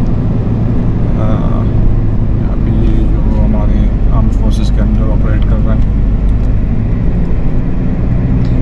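Steady road and engine rumble inside the cabin of a moving Toyota Hilux Revo pickup, with quiet voices at times.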